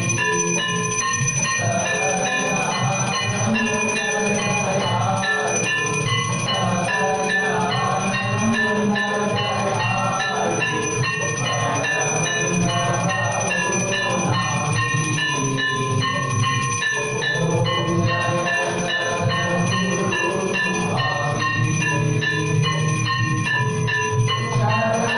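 Temple bells ringing continuously and rapidly for aarti, with music underneath.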